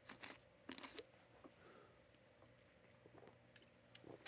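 Near silence with a few faint crinkles and clicks of a plastic water bottle being handled and opened, mostly in the first second.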